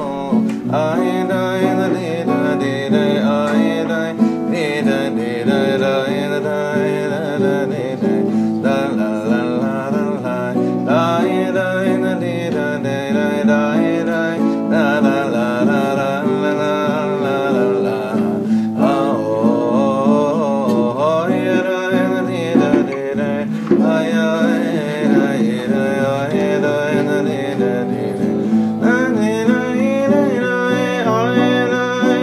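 A man singing a slow wordless niggun melody, accompanying himself on a nylon-string classical guitar.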